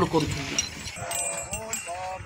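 Men's voices calling out among a passing crowd. A louder voice breaks off at the start, and fainter voices carry on about a second in.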